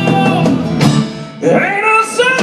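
Live band with acoustic guitar, banjo and drums playing a slow song, a lead melody sliding in pitch over it; the sound drops briefly about a second and a half in.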